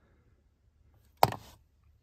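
A small plastic electronic flasher relay set down on a vehicle floor mat: one sharp tap a little over a second in, otherwise near silence.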